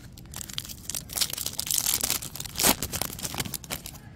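Foil wrapper of a Topps baseball card pack crinkling and tearing as the pack is opened by hand, in a dense run of crackles.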